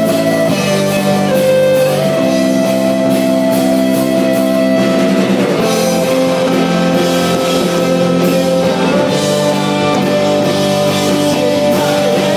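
Rock song playing an instrumental passage: sustained, ringing guitar chords over drums and cymbals.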